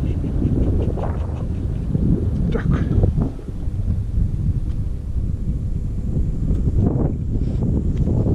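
Wind buffeting a body-worn action camera's microphone: a steady low rumble, with a few brief fainter sounds over it.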